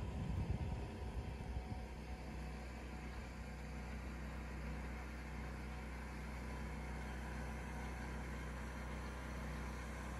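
Steady low mechanical hum with a faint hiss over it, and low rumbles on the microphone in the first two seconds.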